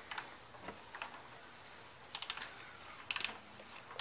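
Ratchet wrench clicking in three short runs of rapid ticks as it turns an oil filter cap up into its housing under a car.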